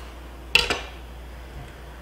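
A kitchen knife gives one sharp knock against a wooden cutting board about half a second in, as it trims the ends off a bunch of radish sprouts.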